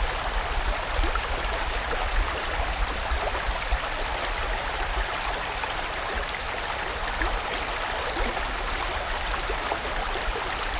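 Mountain stream flowing over rocks: a steady, even rush of water.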